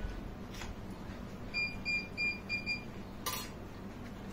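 Four short, evenly spaced electronic beeps, all on one high pitch, about a second and a half in, followed by a single sharp clink just past three seconds, against quiet room noise.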